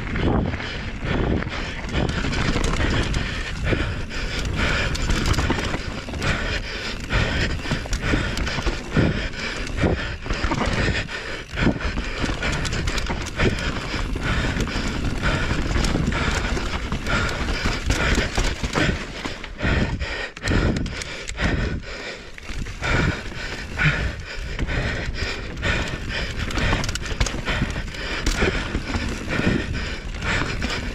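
Mountain bike ridden fast down a rough dirt trail, heard from a rider-mounted camera: air rushing over the microphone and tyres on dirt, broken by frequent knocks and rattles as the bike hits bumps. The rider is breathing hard.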